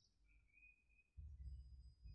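Near silence: faint outdoor ambience with a few short, thin bird chirps in the first second, and a low rumble that starts again about a second in.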